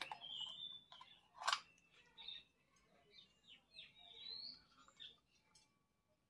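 Faint handling sounds of a small spoon scooping yogurt out of a plastic cup, with one sharp click about a second and a half in.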